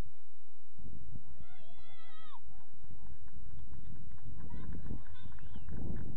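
Wind rumbling and buffeting on an outdoor microphone, with a distant wavering, bleat-like call about one and a half seconds in that drops away at its end, and more distant rising-and-falling calls near the end.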